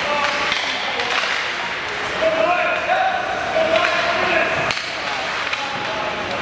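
Ice hockey play in an indoor rink: sharp clacks of sticks and puck on the ice and boards, with voices shouting for about two seconds in the middle.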